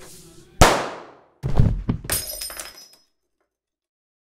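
A single sharp bang with a fading tail, then a heavy thud and glass breaking and clinking with a ringing tone. The sound cuts off abruptly about three seconds in.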